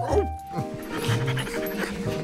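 Background cartoon music with a cartoon dachshund's short vocal sounds near the start.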